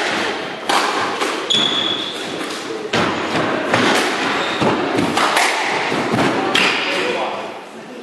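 Squash rally: sharp racket strikes and the ball smacking the court walls, about one a second, each ringing with echo in the enclosed court.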